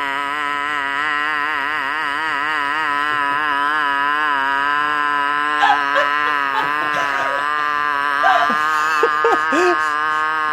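A woman holding one long, loud 'ahhh' yell as a lion-pose exercise, mouth wide and tongue out; her pitch wavers at first, then holds steady. From about halfway in, short bursts of men's laughter come in over it.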